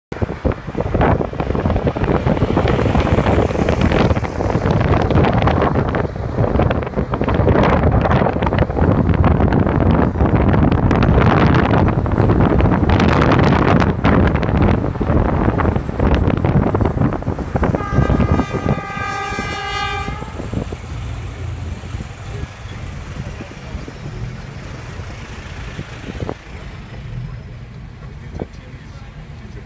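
Loud wind and road noise from a moving car, rough and uneven. A vehicle horn sounds once for about two seconds, past the middle. The noise then drops to a quieter steady low rumble as the car slows in traffic.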